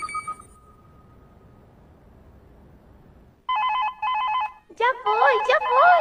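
Telephone ringing in the anime soundtrack: two short warbling rings about three and a half seconds in, followed by a voice.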